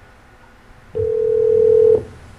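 Telephone ringback tone: a single steady tone about a second long, starting about halfway through. It is the sign of the transferred line ringing, not yet answered.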